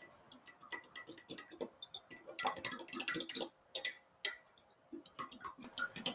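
A spoon stirring syrup into soy milk in a drinking glass, clinking lightly and irregularly against the glass, with the clinks coming thickest around the middle.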